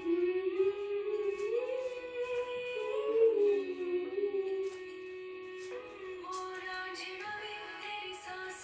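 Recorded Indian song with a female voice singing long, sliding notes over instrumental backing, played as dance music. It comes in suddenly at the start and turns softer a little past halfway.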